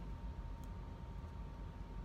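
Low steady hum of a home furnace running, with a faint click about a third of the way in.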